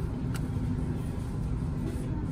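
Steady low rumble and faint hum of a store's background noise, with one light click about a third of a second in.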